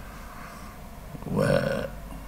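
A pause with only low room noise, then about a second and a half in a man's voice gives one short drawn-out hesitation syllable, an 'eh' with no word.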